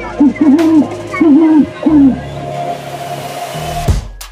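Spooky sound effects played over a ghost-house attraction's loudspeakers: a run of about six short hooting calls, each rising and falling in pitch, in the first two seconds, over a steady low droning music bed.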